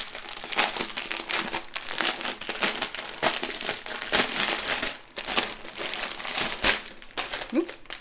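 Clear plastic wrapping crinkling in the hands as it is pulled open around a bundle of bagged diamond-painting drills, a dense run of irregular crackles.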